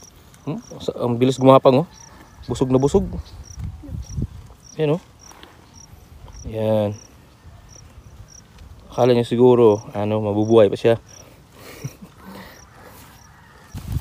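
A man's voice in short wordless murmurs and hums, over a steady insect chirping about twice a second.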